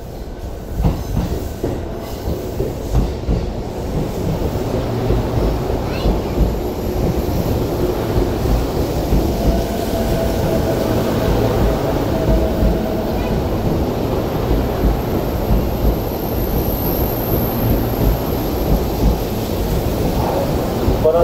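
A JR E233-2000 series electric commuter train pulls into the platform, its steel wheels rumbling steadily on the rails as the cars pass close by. A faint whine sounds around the middle, and a thin high whine comes near the end.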